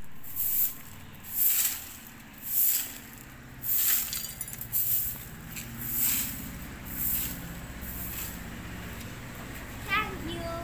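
A stiff stick broom sweeping a paved courtyard, a swish about once a second as it brushes leaves across the paving stones.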